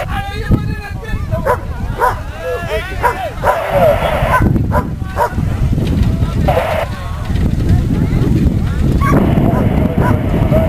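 A dog yipping and whining in a string of short, pitched calls, mixed with people's voices, over a steady low rumble of wind on the microphone.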